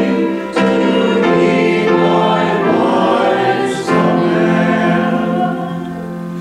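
A church congregation singing a hymn together in sustained, held notes that move to a new pitch every second or so, with brief breaks between phrases.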